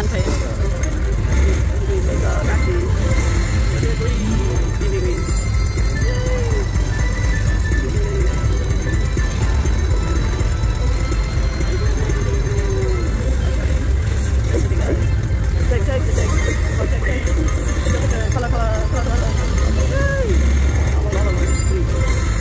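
Video slot machine playing its bonus-round music and win-celebration sounds as the win total counts up, over loud casino floor noise: a steady low rumble with indistinct voices.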